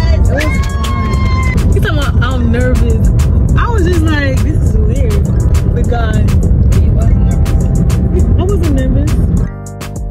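A song with a heavy bass beat and a singing voice plays loudly. Near the end it cuts off suddenly to quieter guitar music.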